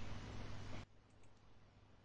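Faint microphone hiss with a steady low mains hum and light computer-mouse clicking, cutting off to dead silence just under a second in.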